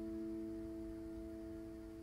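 A classical guitar chord rings on after being plucked, its few notes holding steady and slowly fading away.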